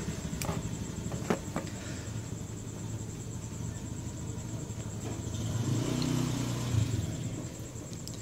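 A steady low mechanical rumble, swelling a little about two-thirds of the way through, with a few light clicks and knocks in the first couple of seconds as a motorcycle carburetor's metal body is handled and turned over.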